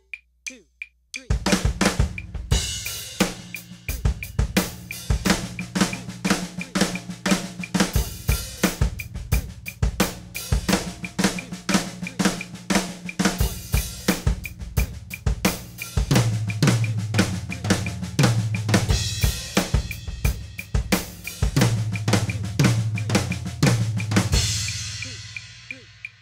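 Drum kit played in sixteenth-note fills built on a left-hand one-sided flam accent (flam, right, left), with the flams' right strokes on the toms and the rest on the snare, giving a four-over-three feel. Kick drum and cymbals are heard too. The playing starts about a second in, the toms are more prominent in the second half, and it stops near the end, leaving the kit ringing.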